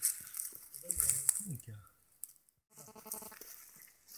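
Short non-word vocal sounds from a person: a falling-pitch exclamation about a second in, and a held, wavering tone near the end.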